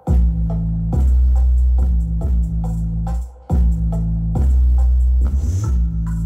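Electronic dance music with deep, sustained bass notes played loud through four Panasonic SB-VK800 and SB-W800 twin-driver speakers on an amplifier, as a bass test. The bass cuts out briefly about three seconds in, then comes back.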